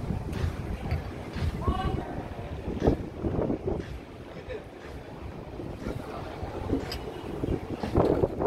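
Wind buffeting the microphone with an uneven low rumble, and snatches of people's voices in the background.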